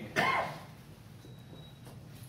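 A man's brief voice sound just after the start, then quiet room tone with a low steady hum.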